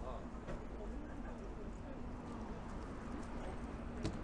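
Busy pedestrian sidewalk ambience: passers-by talking indistinctly and footsteps on the paving, over a steady low hum.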